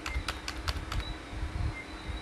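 A handful of separate clicks on a computer keyboard, spread unevenly over about two seconds.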